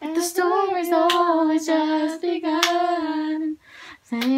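Girls singing a melody in long held notes, with a few sharp hand claps; the singing breaks off near the end.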